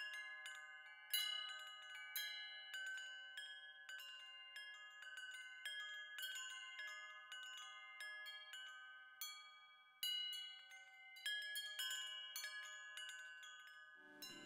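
Wind chimes ringing: irregular strikes of several high metal tones that overlap and ring on, with a few louder strikes among them.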